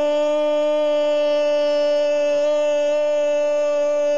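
Football radio commentator's long goal cry, one held 'gooool' shouted at a steady pitch without a break.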